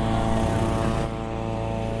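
A steady engine-like drone holding one even pitch, with a hiss of noise over it.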